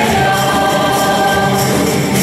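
A choir singing a religious hymn in held, shifting notes, with a light percussion beat in the background.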